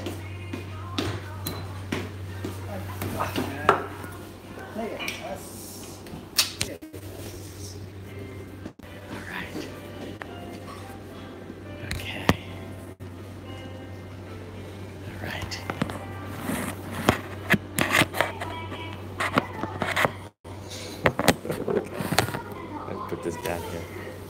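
Restaurant background music with indistinct voices, over a steady low hum, broken by frequent sharp clicks and knocks, busiest in the second half.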